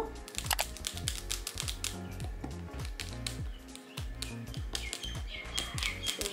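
Background music with a beat: deep bass notes that drop in pitch under a fast run of sharp, ticking percussion.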